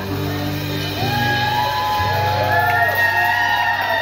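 Live rock band of electric and acoustic guitars, bass and drums holding the closing chords of a song. From about a second in, voices carry long wavering notes that slide up and down over the top.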